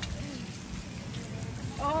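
Steady hiss of water spraying from a step-on beach foot-wash sprayer.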